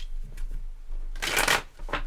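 A deck of tarot cards being shuffled by hand: a few short flicks of cards, then a longer, louder run of shuffling about a second in.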